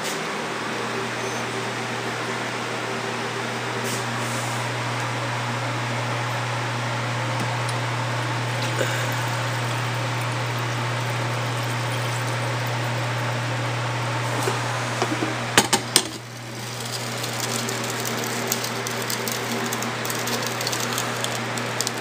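Steady low hum with an even hiss, like a fan running, with a few sharp clicks about three-quarters of the way through.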